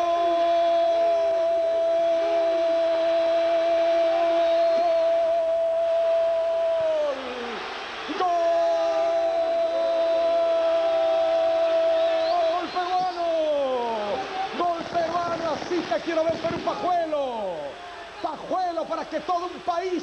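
A TV football commentator's drawn-out goal cry, "goooool", shouted as two long held notes of about seven and six seconds, each falling in pitch as it ends, then excited shouting.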